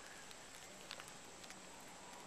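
Near silence: faint steady background hiss with a thin high whine throughout and a few soft ticks near the middle.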